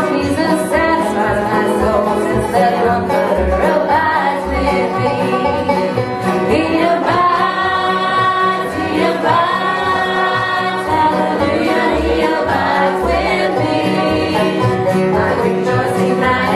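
Bluegrass-style gospel band playing and singing: banjo and acoustic guitars with voices singing a hymn.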